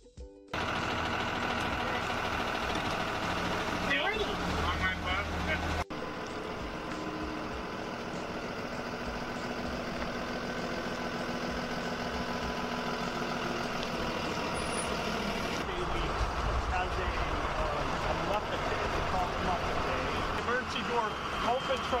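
School bus engine running steadily with a low rumble, and indistinct voices in the later part.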